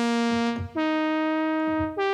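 Roland Zenology Pro software synthesizer playing its "JX Cream" synth-brass preset: single sustained notes, each held about a second, each a step higher in pitch than the last, with a new note starting near the middle and another near the end.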